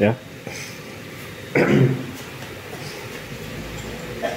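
Speech only: a short spoken word at the start and another brief utterance about a second and a half later, over quiet room tone.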